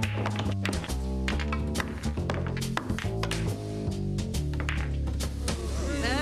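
Background music with a bass line stepping from note to note, over many sharp knocks that include billiard balls clacking together on a pool table.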